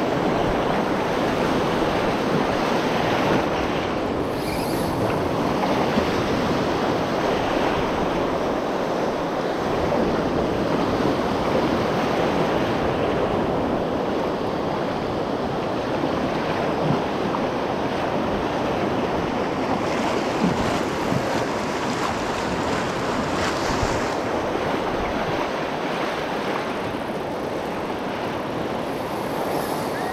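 Gulf surf breaking and washing in the shallows around the microphone, a steady rushing wash, with wind buffeting the microphone.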